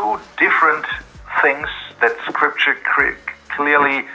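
Speech only: a man talking over a video-call connection, his voice thin and narrowed.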